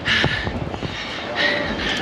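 Wind rushing over the microphone and tyre rumble from a bicycle rolling along a paved path, a steady noisy rush.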